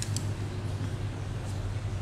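A steady low hum with a faint hiss over it, and a light tick or two near the start.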